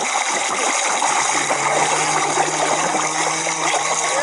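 Swimming-pool sound effect: a steady rush of splashing, churning water. A low steady hum comes in about a second in.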